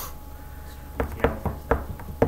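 A quick run of about five sharp keystrokes on a laptop keyboard in the second half, uneven in spacing, over a steady room hum.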